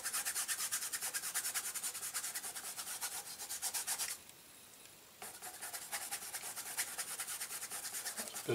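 Paintbrush scrubbing acrylic paint onto a canvas in quick, even back-and-forth strokes, stopping for about a second midway before the strokes resume.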